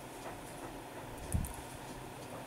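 Low steady background hiss with a faint hum, and a single short, dull, low thump about a second and a half in.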